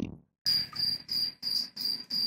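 Cricket chirping in short, evenly spaced bursts, about three chirps a second, each a clear high chirp.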